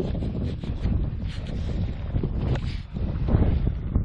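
Wind buffeting the microphone as an uneven low rumble, with some rustling and scuffing from gloved hands working in the soil of a freshly dug hole.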